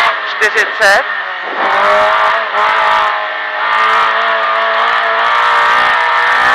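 Historic rally car's engine heard from inside the cockpit: it drops back with a few short sharp bursts in the first second, then pulls hard with its pitch rising, eases briefly about halfway through and pulls again.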